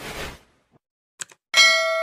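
Subscribe-button animation sound effects: a rushing noise that fades out about half a second in, a couple of quick clicks, then a bright bell-like ding near the end that rings on with many steady overtones.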